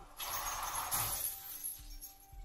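Anime soundtrack: a burst of noise starts a moment in, holds for about a second and fades, with music underneath.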